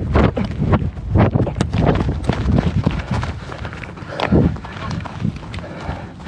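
Running footsteps on grass, with irregular thumps about two a second over a rough rumble of wind and handling on a moving camera.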